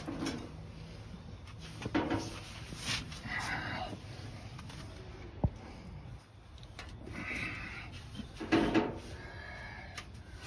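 Scattered clunks, scrapes and a squeak of metal parts being worked as a small-block engine and transmission are eased into a car's engine bay, with one sharp knock about five and a half seconds in.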